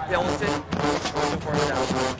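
Speech only: a television football commentator talking.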